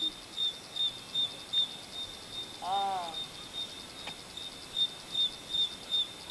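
An insect chirping steadily in a regular, high-pitched rhythm of about two to three chirps a second. About halfway through there is one brief pitched vocal sound that rises and falls.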